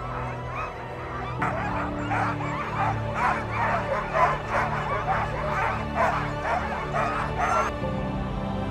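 A team of harnessed Alaskan huskies barking and yipping excitedly over background music, the pre-start clamour of sled dogs eager to run. The barking comes in loud about a second and a half in and cuts off abruptly just before the end.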